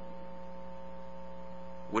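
Steady electrical hum: a few fixed tones that hold without change.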